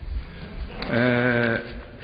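A man's voice holding one drawn-out hesitation vowel at a steady pitch for about two-thirds of a second, about a second in. It comes from an old, dull-sounding speech recording.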